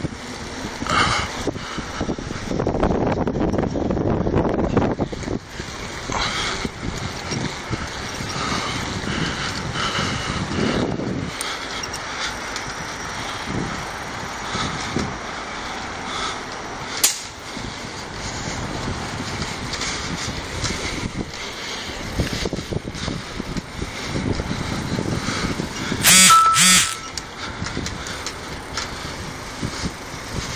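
Wind rushing over a phone's microphone and tyre noise as a mountain bike rolls along a paved trail. There is a sharp click a little past halfway, and two short, loud, high-pitched bursts near the end.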